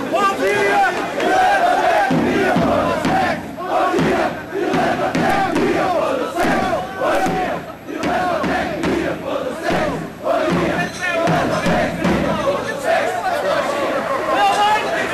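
A crowd of students shouting together, many voices at once. The shouting comes in surges with brief dips between them.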